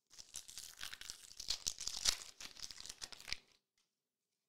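Foil trading-card pack wrapper being torn open and crinkled by hand: a dense crackle that stops about three and a half seconds in.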